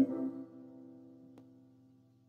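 The last note of a sung line ends right at the start, leaving an instrument chord ringing on as steady held tones that fade away within about a second and a half. A faint click comes partway through.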